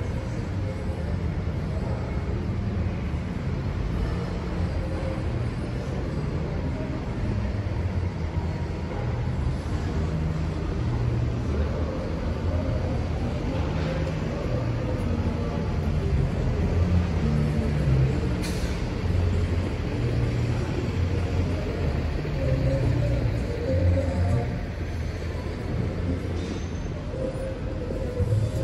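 Steady low rumble of trucks and dock machinery at a busy loading dock, with a short sharp hiss about eighteen seconds in.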